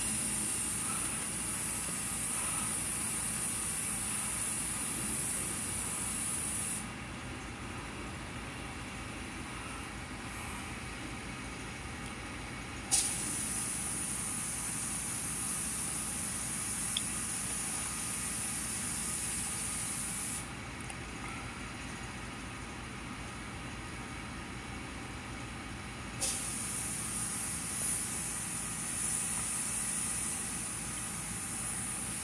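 Steady hiss over a low, even hum inside a vehicle cabin. The hiss drops away twice for several seconds, and each time it comes back it starts with a click.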